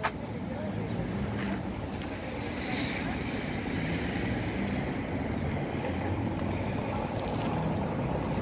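Street ambience: a steady low rumble of wind on the phone's microphone over light road traffic, with faint voices of passers-by.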